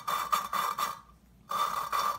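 Valve face grinding against its seat insert with coarse valve-grinding compound (about 200 grit), turned back and forth by a suction-cup lapping stick: a gritty rasping scrape in two strokes with a short pause about a second in. The faces are not yet worn in, so the lapping sounds coarse.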